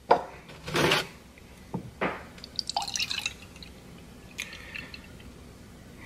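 Milk being poured from a plastic jug into a cup: a few short splashes and a trickle of drips.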